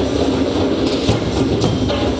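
Percussion band drumming a busy, steady rhythm, with a large strapped bass drum under many sharp, quick strokes of smaller drums and clacking percussion.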